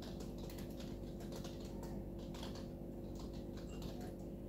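Computer keyboard typing: an irregular run of quick key clicks, over a steady low electrical hum.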